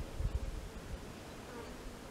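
A flying insect buzzing faintly, with low rumbles on the microphone in the first half second.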